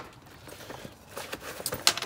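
A sharp metallic click as a small brass TXV screen fitting is set down on aluminium diamond plate, followed by faint rustling and a few small clicks as the tool bag's pouches are handled.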